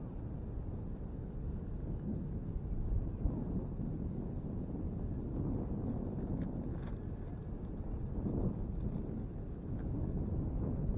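Wind buffeting the microphone, a low rumble that rises and falls in gusts.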